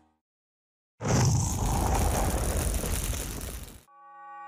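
After a second of silence, a loud, rough, toneless rattling noise from hand work on a fibreboard panel at a shop bench, lasting nearly three seconds and cutting off suddenly.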